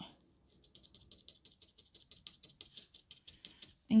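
Barbed felting needle jabbing repeatedly through wool roving into a foam block, a faint, quick, even patter of soft ticks about six a second, as the fibre is flattened.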